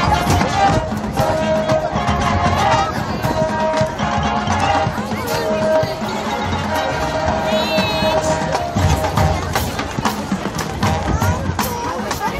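High school marching band playing its halftime show: held brass chords over marching drums and front-pit percussion.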